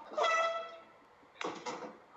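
A short, high, beep-like tone lasting about half a second, followed about a second later by a brief rustling burst.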